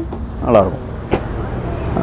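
Steady low background rumble, with a short spoken sound about half a second in and a single sharp click a little after a second.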